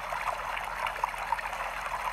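Recorded bamboo water fountain sound, water trickling steadily with small drips, played back through a handheld device's small speaker, so it comes across thin with little low end.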